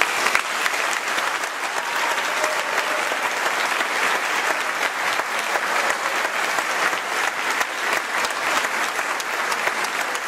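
Audience applauding: dense, steady clapping.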